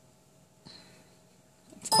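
Mostly quiet room tone with a brief faint noise about two-thirds of a second in, then a voice starts speaking right at the end.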